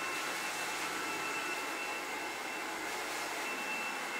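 BaByliss Pro hand-held hair dryer running steadily while blow-drying wet hair: an even rush of air with a faint high whine.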